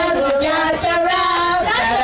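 A woman singing into a microphone, with children's voices singing along, in a song of drawn-out, wavering notes.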